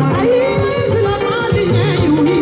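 Live band music with a woman singing over a steady, repeating bass line.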